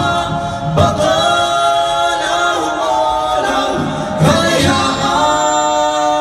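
Live rock band playing: singing over electric guitars and drums, with long held notes.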